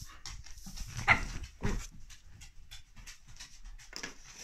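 A dog making two short breathy sounds about half a second apart, a little over a second in, amid soft rustling of paws and fur on a fabric cushion.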